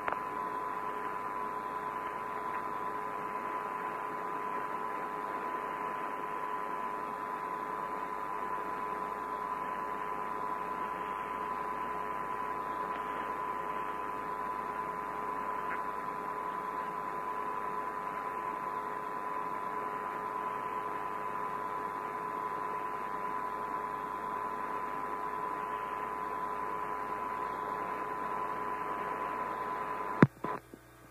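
Steady hiss of the Apollo 16 air-to-ground radio link, with two steady tones running through it, the higher one louder.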